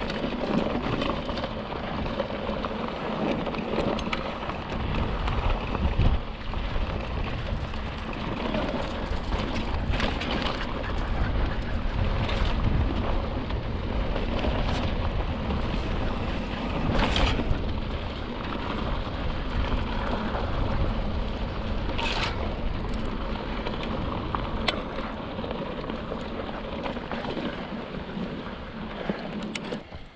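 Hardtail mountain bike rolling along a rocky dirt trail. A steady low rumble of knobby tyres on dirt and gravel mixes with wind on the camera microphone, broken a few times by short sharp rattles or knocks.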